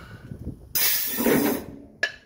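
Compressed air hissing from a semi-trailer's pneumatic tandem-release system as it is worked, a sudden burst lasting just under a second that starts about a second in and then tails off.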